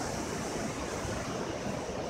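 Steady wash of ocean surf on a beach, with wind on the microphone.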